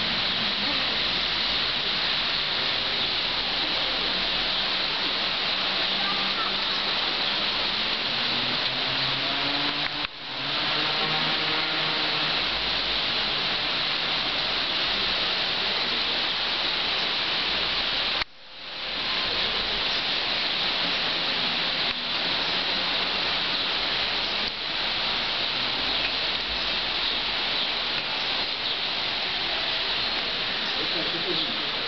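Light rain shower falling on wet pavement: a steady, even hiss that drops out briefly twice, about ten seconds in and again around eighteen seconds.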